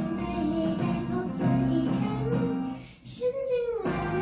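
A young girl singing a Thai pop ballad into a handheld microphone over instrumental accompaniment. About three seconds in, the sound drops briefly before a short held note.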